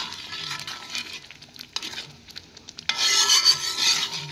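A spoon stirring and scraping through thick tomato sauce cooking in a large metal pot, with scattered clicks of the spoon against the pot and a louder stretch of scraping about three seconds in.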